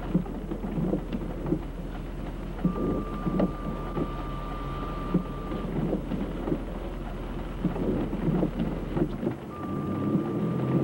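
Inside a car idling at a stop in the rain: irregular tapping and thuds, typical of rain on the roof and windshield, over a low steady engine hum. Vehicles swish past on wet pavement.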